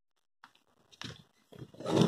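A few faint clicks and knocks as corded power drills and a plastic power strip are handled and moved, then a louder noise that builds up near the end.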